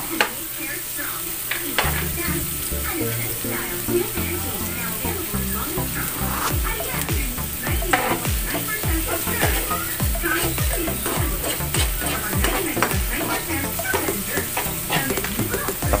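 Minced garlic and chopped onion sizzling in hot oil in a nonstick frying pan, stirred with a metal spoon. Background music with a steady low beat comes in about two seconds in.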